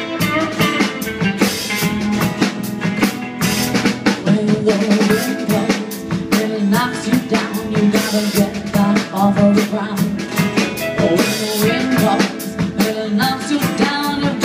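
Live rockabilly band playing an instrumental passage: drum kit with snare rimshots keeping a steady beat under upright bass and electric guitars.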